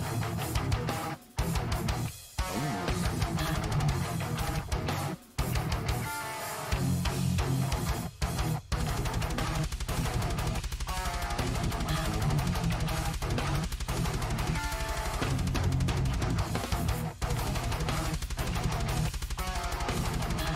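Technical death metal guitar playthrough: two seven-string Kiesel electric guitars shred fast riffs over the band's backing track. The music stops dead several times in short breaks during the first half, then runs on with a fast, even low pulse underneath.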